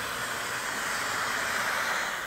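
Steam iron giving off a steady hiss of steam while pressing a sewn seam flat.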